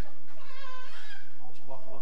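A person's voice, with a high, wavering sound lasting about a second near the start, followed by lower talk.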